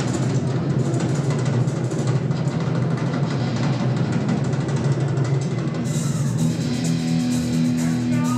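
Heavy metal band playing live: a drum kit played hard under guitar. About six seconds in, a held electric guitar chord starts ringing steadily.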